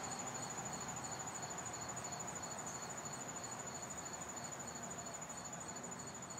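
Crickets chirping: one high continuous trill and a lower chirp pulsing about two and a half times a second, slowly fading.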